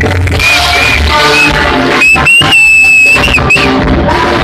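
A live band playing loudly in a hall. About halfway through, the bass drops away and a high note is held for about a second before the full band comes back in.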